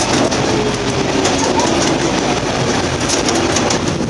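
Open-car miniature park train running along its track through a tunnel: a steady rumble of wheels on rail.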